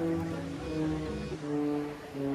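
Background music: a slow instrumental with held notes that change every half second or so.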